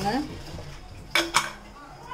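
Stainless-steel pressure cooker lid being fitted and closed on the pot: two sharp metal clanks close together about a second in, with a brief ring.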